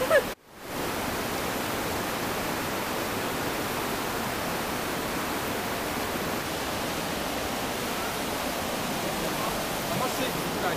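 Steady rushing of a fast mountain river running over rocks in rapids, starting abruptly just under a second in after a brief gap.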